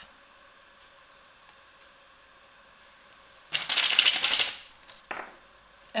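A sheet of paper rustling and crackling as it is lifted off and handled, one loud burst lasting about a second, followed shortly by a brief second rustle.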